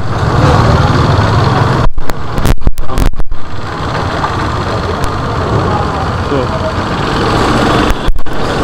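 Steady engine and road noise from a small vehicle riding slowly through a narrow city lane, cutting out briefly a few times about two to three seconds in.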